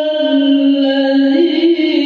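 A voice reciting the Qur'an in the melodic tilawah style, amplified through a microphone, drawing out long held notes with ornamented turns. The pitch steps up about one and a half seconds in, then settles back down.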